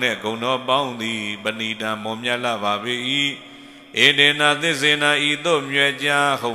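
A Buddhist monk's voice intoning a recitation into a microphone in long, steadily held tones, with a short breath pause a little past halfway through.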